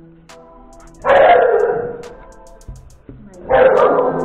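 A dog barks twice, loudly, about a second in and again near the end, over background music.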